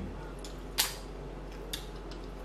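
A sharp click a little before the middle and a fainter one near the end: tableware and steamed apple snail shells knocking against a glass dish and plates as the snails are picked out.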